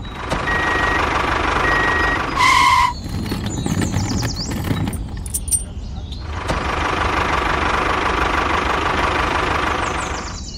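Small electric motor of a toy tractor running with a whirring drone, in two stretches: one at the start and one from about six and a half seconds in. Two short high beeps come in the first two seconds, and a brief louder tone about two and a half seconds in.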